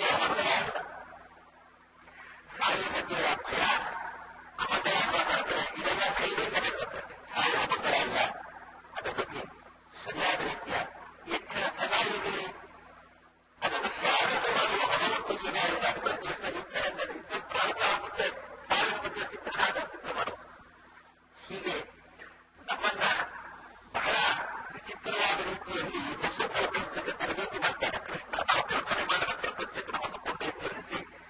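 Speech: a man lecturing in phrases broken by short pauses, over a faint steady low hum.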